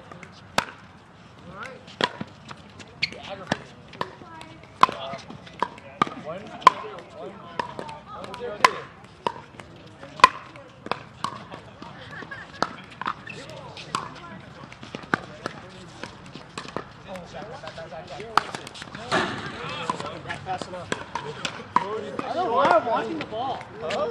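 Pickleball paddles hitting the plastic ball: sharp pops at irregular spacing, roughly one a second, from rallies on several courts. Players' voices chatter in the background, a little louder near the end.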